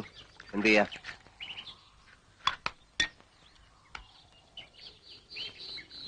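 A short spoken word, then faint bird chirps and three light, sharp clinks of glass about two and a half to three seconds in.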